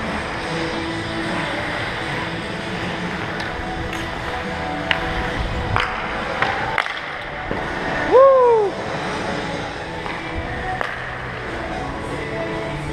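Ice hockey skate blades gliding and scraping on rink ice, with a few sharp clacks of sticks and puck and a short loud shout about eight seconds in, over faint background music.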